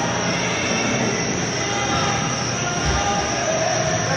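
Steady, echoing din of an indoor soccer game in play in a large metal-walled arena, with faint distant voices in the hall noise.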